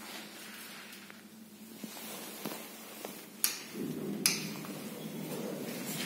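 Two sharp clicks, then a steady low hum sets in and keeps going: the relays and drive of a 1978 SamLZ passenger lift starting up.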